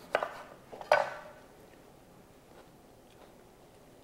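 Knife cutting a lime on a wooden cutting board: two sharp knocks in the first second.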